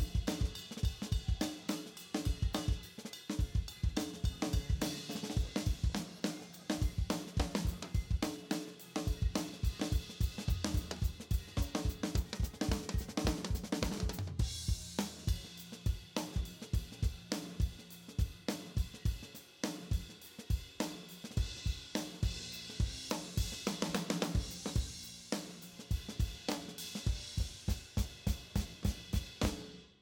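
Multitrack playback of a close-miked live drum kit: kick, snare, hi-hat and cymbals playing a steady groove, with a small reverb on the overhead mics adding a little space. The playback cuts off abruptly at the end.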